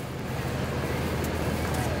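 New York City diesel-electric hybrid transit bus running at low speed beside the curb, its engine giving a steady low drone.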